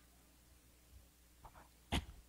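A man sneezing once, close to the microphone: a faint intake of breath, then one short, sharp burst near the end over quiet room tone.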